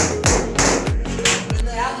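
Loud dance music with a heavy beat of booming bass drums that drop in pitch, and crisp high percussion over it.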